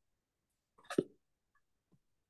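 A single short vocal sound from a person about a second in, with silence around it.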